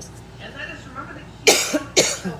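A woman coughing into her fist: two sharp coughs about half a second apart near the end.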